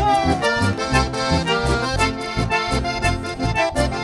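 Live chamamé band playing an instrumental passage: piano accordion and bandoneon carrying the melody over guitar, with a steady low beat from the bass.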